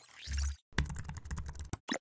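Keyboard typing sound effect: a quick run of keystrokes lasting about a second as text is typed into a search bar. It is preceded by a short sound-effect swell with a deep low boom.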